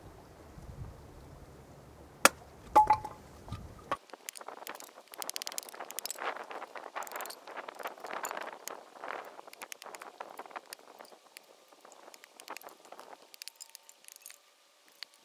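Fiskars 28-inch axe splitting kindling: a few sharp chops into wood, the loudest about two seconds in, one with a brief metallic ring, followed by several seconds of quieter, rapid crackling and tapping.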